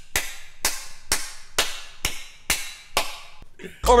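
Hand claps in a steady rhythm, about two a second, from someone laughing hard; a burst of laughter breaks out near the end.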